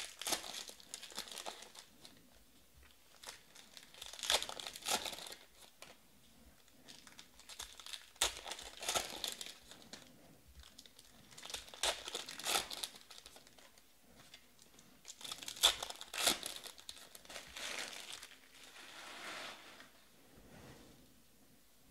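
Foil trading-card pack wrappers being torn open and crinkled by hand, in short bursts every three to four seconds with quieter gaps between.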